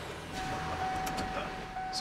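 Van cabin noise while driving: a steady low engine and road rumble. A single steady tone is held from shortly after the start to the end.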